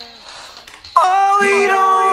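Isolated male rock lead vocal with no backing instruments. A faint reverb tail fades out, then about a second in a loud sung note enters sharply and is held, with a second, lower vocal line joining beneath it shortly after.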